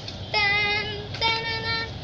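A girl singing two long held notes at about the same pitch, the first starting about a third of a second in and the second just after the middle.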